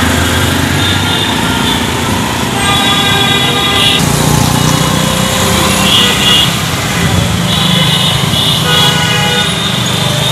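Busy city-street traffic: car and motorcycle engines running close by, with horns honking again and again, in bursts about three seconds in, around six seconds and near the end.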